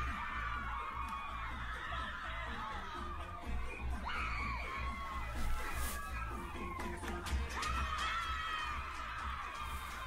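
Music with a steady bass line playing while a crowd of students cheers and shouts over it.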